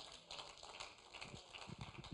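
Near silence: faint room tone, with a few faint soft taps in the second half.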